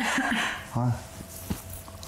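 Only speech: two or three short, clipped vocal bursts, the first one breathy, with a single faint click about one and a half seconds in.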